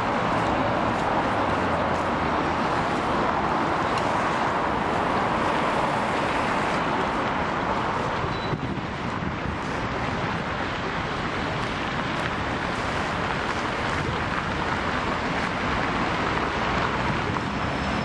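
Steady city street traffic noise, cars passing on a busy avenue, dipping slightly about halfway through.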